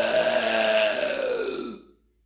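A man's long, loud burp lasting about two seconds, its pitch dropping near the end.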